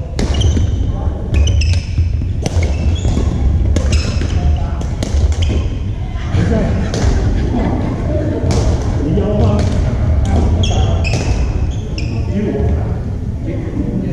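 Badminton play in a large gym: sharp racket strikes on the shuttlecock and shoes squeaking on the wooden floor, many short hits throughout, echoing in the hall under a background of voices from the other courts.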